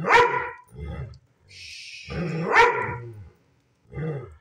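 Husky-type dog barking in pitched, talking-style calls, demanding a walk: a loud call at the start, a short one about a second in, and a longer loud one past the middle.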